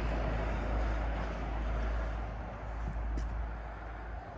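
Outdoor background noise: a steady low rumble with a hiss over it, slowly fading.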